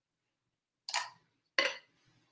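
Plastic lid of a gelato tub being pried open: two short crackling clicks, one about a second in and one near the end.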